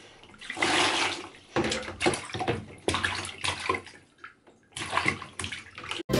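Bath water splashing and sloshing in a baby bath as a hand washes a toddler, in uneven splashes with a brief lull about two-thirds of the way through.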